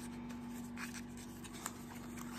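Faint rubbing and scraping of a small cardboard lipstick box being handled and opened by hand, with a couple of light clicks, over a steady low hum.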